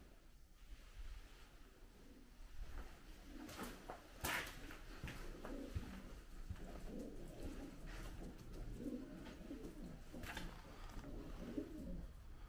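Pigeons cooing, a low warbling that keeps going from about three seconds in. Two sharp knocks cut across it, one a third of the way in and one near the end.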